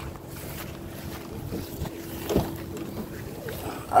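Wind on the microphone over a faint steady hum, with one dull thump a little past halfway as a car door is pulled open.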